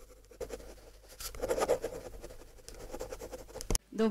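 Pencil scratching on paper in quick, irregular strokes, as of sketching and hatching lines. It cuts off suddenly just before the end.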